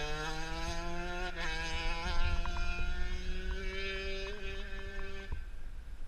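Shifter kart's two-stroke engine moving away at speed, its note rising steadily as it accelerates, with a brief break about one and a half seconds in. It stops abruptly about five seconds in.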